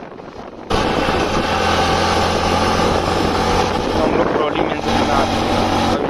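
Hero Passion single-cylinder motorcycle running at a steady cruising speed, with heavy wind rush on the microphone. The sound jumps sharply louder about a second in.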